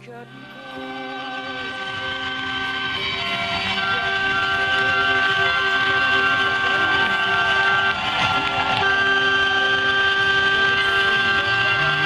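Arena horn sounding in three long chord blasts over crowd cheering that swells in the first few seconds, as the winning team celebrates a championship.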